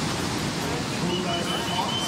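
Breaking ocean surf and whitewater: a steady, even rushing hiss. A faint thin high tone comes in about halfway through.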